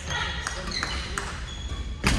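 Badminton hall between rallies: a few light clicks of rackets hitting shuttlecocks and brief squeaks of sports shoes on the wooden court floor, with voices in the background. A louder, sharp racket hit lands right at the end as the next serve is struck.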